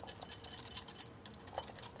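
Wire whisk beating egg yolk in a small glass bowl, faint and quick, with light rapid clicks of the wires against the glass: the start of a hand-whisked aioli.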